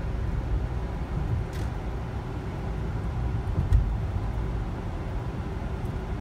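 Car cabin noise while driving: a steady low road and engine rumble, with a brief knock about a second and a half in and a louder one near four seconds.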